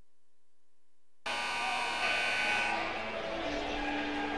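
Near silence with a faint hum, then a little over a second in the gym sound cuts in on an electronic scoreboard buzzer, which sounds for about a second and a half and signals the end of a timeout. Gym background noise carries on under it.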